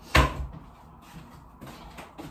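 A single loud clunk in the kitchen just after the start, dying away within a fraction of a second, followed by faint handling noise.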